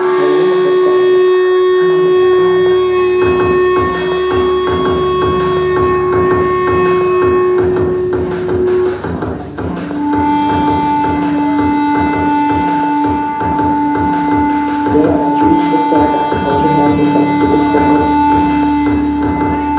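Metal band playing live: loud distorted guitar holding long sustained notes over drums and bass, kicking in abruptly. The held note changes about halfway through.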